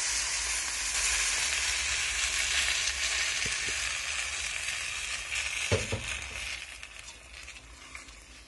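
Hot pan sizzling as a blended milk-and-flour liquid is poured onto shredded chicken sautéed in olive oil; the sizzle is steady and then dies away over the last few seconds as the liquid settles in the pan. A couple of soft knocks come about halfway through.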